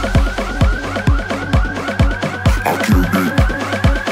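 Electronic dance music instrumental: a deep kick drum about twice a second under a fast, repeating rising synth figure.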